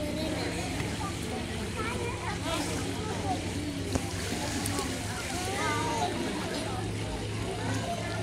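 Several children's voices calling and chattering as they play in a swimming pool, with light water splashing and a steady low hum underneath.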